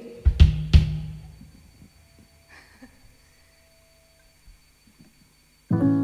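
Two loud hits on a drum kit, kick drum with cymbal, in the first second, ringing away to near quiet. Near the end a sustained chord from the band comes in abruptly and holds steady: the start of the song.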